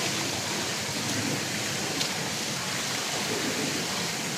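Steady hiss of running, splashing pool water, with one faint click about two seconds in.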